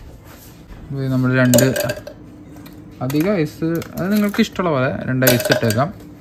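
Ice cubes dropped into an empty plastic blender cup, clinking and knocking against the plastic a few times, with a voice over them.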